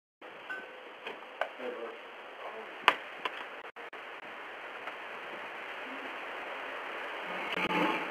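Outdoor sound through a Ring doorbell camera's microphone: a steady hiss with a few sharp clicks and knocks, the loudest about three seconds in, then a louder stretch of movement noise near the end as a man reaches the porch and handles the furniture.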